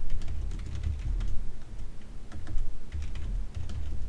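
Typing on a computer keyboard: a run of quick, uneven key clicks.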